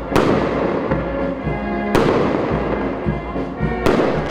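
Aerial fireworks bursting: three sharp bangs about two seconds apart, each followed by a fading crackle.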